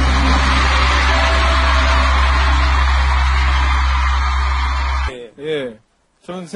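Live concert sound: a dense wash of crowd noise over a steady low bass tone. It cuts off suddenly about five seconds in, and a man's voice follows briefly.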